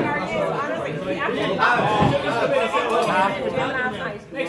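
Several people talking over one another: crowd chatter in a large pub room.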